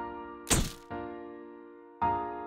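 Soft piano music, its chords ringing and fading. About half a second in comes one short, sharp burst of noise: a camera-shutter sound effect as the photograph is taken.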